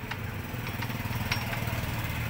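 A small engine running steadily at idle, a low even rumble, with a few faint clicks.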